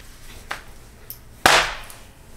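A single sharp slap of a hand, about one and a half seconds in, with a faint tap about half a second in.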